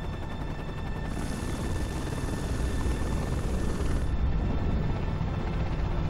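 Helicopter rotor and engine noise, a steady low rumble, with a hissing layer from about a second in until about four seconds in.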